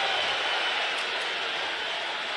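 Steady din of a large arena crowd during a basketball game, an even wash of many voices with no single sound standing out.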